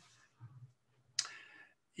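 A pause in a man's speech, quiet apart from a faint low hum and a single short, sharp click a little over a second in that fades within half a second.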